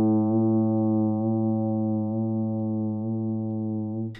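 Clean electric guitar on its humbucker pickup, played through a MayFly Audio Sketchy Zebra pedal in vibrato mode. The chord rings out and slowly fades, with a gentle waver in pitch about once a second.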